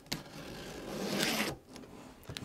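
Packing tape on the underside of a cardboard box being slit and torn open with a small pointed tool: a click, then a scraping, tearing rasp that grows louder for about a second and a half and stops abruptly.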